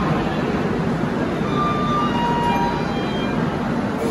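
Steady noise of a railway platform beside a standing passenger train, with a few faint brief tones about halfway through.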